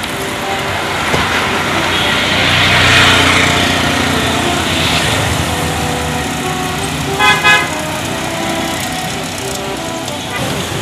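Busy street traffic with engines running; a vehicle passes close, loudest about three seconds in. About seven seconds in come two short horn toots.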